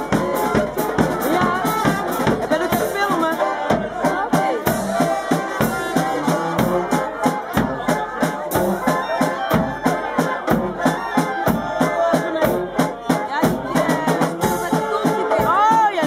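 Carnival brass band playing live: snare drums and a bass drum keep a steady beat under horns.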